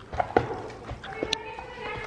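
Horses walking on a barn's dirt floor: a few scattered soft hoof steps and knocks.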